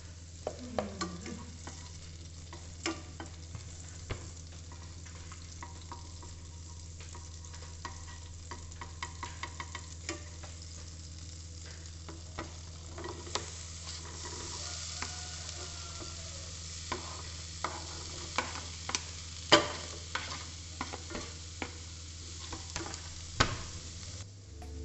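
Butter sizzling in an enamelled pan while diced apples are scraped into it and stirred with a wooden spatula, the spatula clicking and knocking against the pan and board. The sizzle grows brighter a little past the middle as the apples start to fry, over a steady low hum.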